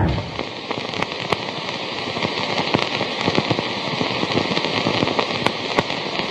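A steady crackling hiss full of small sharp pops and clicks, coming in abruptly as the music stops.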